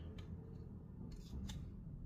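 Cardboard trading cards sliding and rubbing against one another as a hand-held stack is fanned apart, with a couple of faint flicks.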